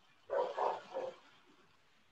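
A dog barking three times in quick succession, heard through a video-call microphone.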